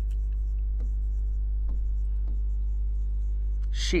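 White chalk scratching and tapping on a chalkboard as words are written, a few faint strokes spread through the moment, over a steady low electrical hum.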